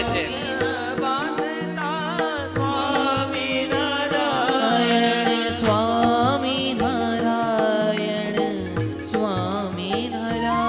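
Devotional chant-style singing with instrumental accompaniment and a steady beat, the audience clapping along in time.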